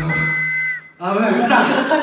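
A whistle sounding one short, steady blast that cuts off suddenly, signalling the end of the bout. Men's voices follow about a second in.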